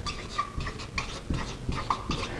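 Dry-erase marker writing on a whiteboard: a run of short squeaks and scratches, one stroke after another.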